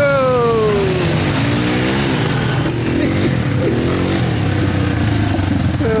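ATV engines running: one passes close, its pitch falling over the first second, while another revs up and down as it drives through a muddy, water-filled trail, over a steady low engine rumble.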